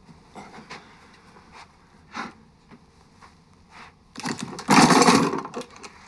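Small handling knocks and clicks, then about four seconds in a loud, dense metal clatter lasting about a second and a half: a lot of knives spilling out.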